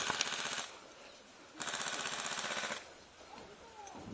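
Airsoft electric guns (AEGs) firing full-auto: a rapid, even rattle of shots in two bursts. The first cuts off about half a second in, and the second runs for about a second from roughly 1.6 seconds in.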